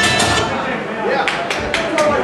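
A karaoke backing track ends about half a second in, then a few people in the audience start clapping, with scattered voices.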